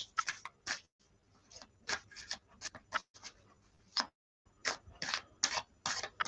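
Tarot cards being shuffled and handled: a string of faint, irregular card clicks and snaps, with a short pause a little after four seconds in.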